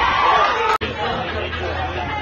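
Baseball spectators shouting and chattering just after a ball is put in play, the voices breaking off suddenly just under a second in, followed by lower crowd chatter.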